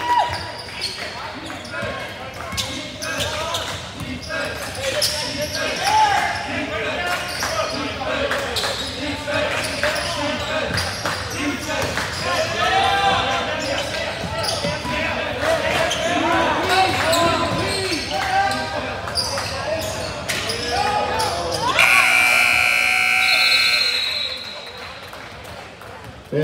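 Basketball game in a gym: a ball bouncing on the hardwood under shouting player and crowd voices. About 22 seconds in, the scoreboard buzzer sounds for about two seconds, marking the end of the half.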